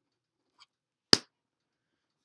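A single sharp click that dies away quickly, with a faint tick about half a second before it.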